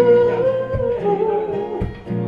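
Acoustic guitar strummed live, with a man's voice holding and bending wordless sung notes between lines.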